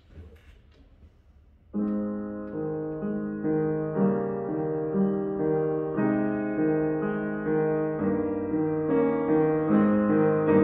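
1992 Yamaha P116T acoustic upright piano starting to play about two seconds in. It sounds sustained chords with a steady pulse of about two notes a second.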